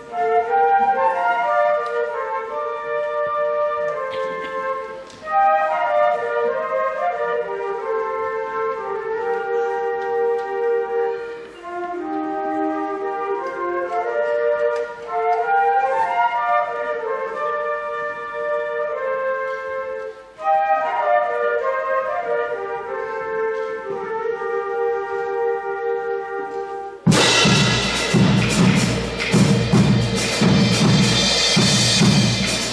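Youth showband of flutes and brass playing a melodic tune in phrases of held notes, with brief breaks between phrases. About 27 s in, drums and percussion come in suddenly and loudly.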